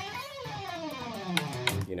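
Electric guitar played briefly, its notes gliding up in pitch and then back down. A man says "you know" at the end.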